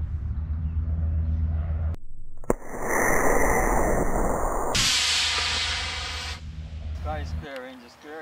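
Model rocket motor igniting with a sharp pop about two and a half seconds in, then a loud rushing hiss of thrust lasting a couple of seconds and fading as the rocket climbs away.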